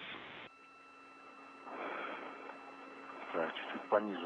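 Spacewalk radio communications channel: band-limited hiss with a few steady hum tones, which changes about half a second in, a soft rush of noise around the middle, and faint broken speech near the end.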